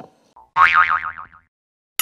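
A cartoon 'boing' sound effect about half a second in: a wobbling spring-like tone that falls in pitch and lasts about a second.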